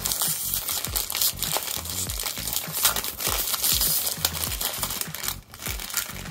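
Plastic-foil blind-bag packaging crinkling and crackling continuously as hands handle it and pull it open.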